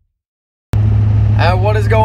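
Silence, then a sudden cut-in to the steady low drone of a car's engine and road noise heard from inside the cabin while driving, with a man starting to talk over it about halfway through.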